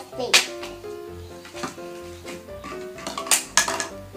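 Light background music with a simple stepping melody, over which plastic toy food and a plastic bag are handled. There is one sharp click about a third of a second in and a short cluster of clicks and crinkles a little after three seconds.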